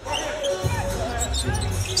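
A basketball being dribbled on a hardwood court, under arena music and faint voices from the stands and the court.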